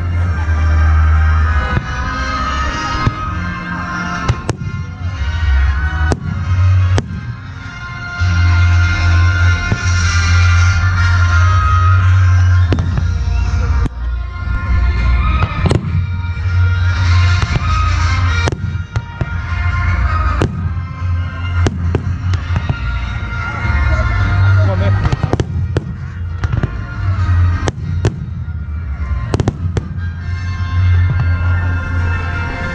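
Fireworks display: shells bursting in many sharp bangs at irregular intervals, over loud music with a heavy bass playing along with the show.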